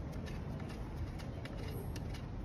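A few faint metallic clicks from a 5 mm Allen key turning a screw into a truck seat's steel rail frame, over a steady low rumble.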